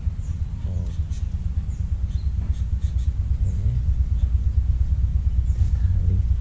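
Steady low rumble of wind buffeting the microphone, with a few faint high bird chirps and soft rustles.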